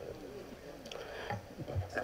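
Faint, muffled sobbing from a man crying with his face turned away from the microphone: soft wavering whimpers rather than words.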